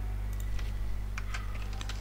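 A few light computer keyboard clicks, scattered and irregular, over a steady low electrical hum.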